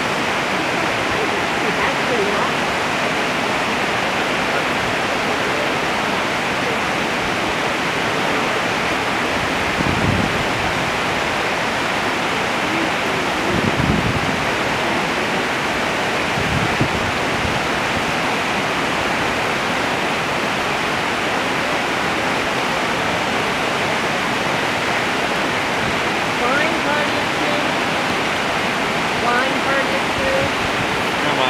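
Rushing white water of the Brooks River rapids, a steady even rush throughout, with a few brief low thuds around the middle.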